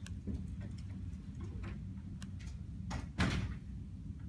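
Scattered clicks of laptop keyboard typing over a steady low room hum, with one louder knock about three seconds in.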